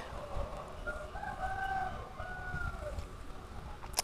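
A rooster crowing faintly, one long call lasting about two seconds starting about a second in, its pitch sagging toward the end.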